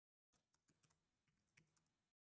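Very faint computer keyboard typing: a few scattered key clicks, barely above silence, as a password is re-entered.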